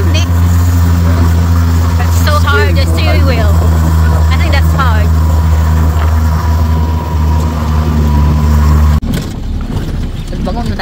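Engine of an old open-top jeep running steadily under way, a low, even drone. About nine seconds in it breaks off suddenly into a rougher, noisier rumble.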